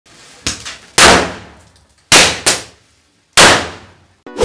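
Small Diwali firecrackers bursting one after another: about six sharp bangs at uneven intervals, each dying away over about half a second.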